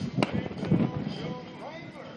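A sharp rifle shot about a quarter second in, the report of a blank cartridge fired from horseback at a balloon target, followed about half a second later by a second, duller bang.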